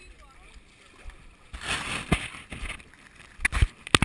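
Footsteps splashing and sloshing through a shallow muddy creek, coming as a run of irregular splashes in the second half. The sharpest, loudest splashes come near the end.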